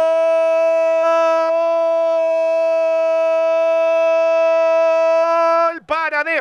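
A football commentator's drawn-out goal cry: one long shouted "gol" held on a steady pitch for nearly six seconds, breaking off just before the end, celebrating a goal just scored.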